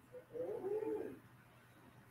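A person's short wordless vocal sound, about a second long, rising and then falling in pitch. It is much quieter than the preaching around it.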